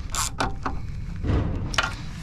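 Hand tools and bolts clinking, with about four short sharp clicks during wrench work on a bolted fitting.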